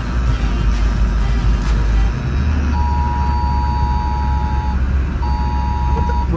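Steady low road rumble inside a moving car's cabin, with music ending about two seconds in. Then two long, steady electronic tones sound over the rumble, the second shorter than the first.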